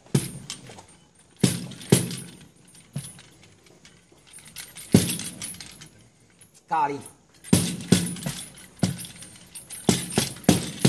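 Small wooden hand-held god's sedan chair knocking against a tabletop in about ten sharp, irregular strikes, some close together, each with a short ring. The knocks are the chair tracing characters in a spirit-writing divination, which are read aloud as they come.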